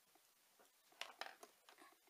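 Near silence in a small room, then about a second in a short run of faint clicks and rustling as makeup palettes are handled.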